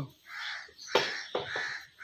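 Crows cawing, several short hoarse caws in a row, with a sharp click about a second in.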